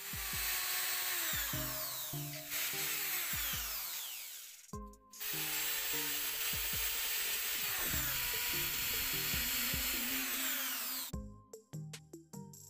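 Small power drill boring into a cast resin lure body to make holes for lead ballast weights. It runs in two long spells with a short break about four and a half seconds in, and stops about a second before the end.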